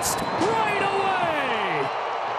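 A long, drawn-out call that falls steadily in pitch over about a second and a half, over the steady noise of a ballpark crowd, as a first-pitch home run carries toward the left-center field wall.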